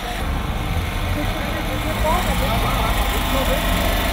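A vehicle engine idling with a steady low rumble, under the scattered voices of people talking.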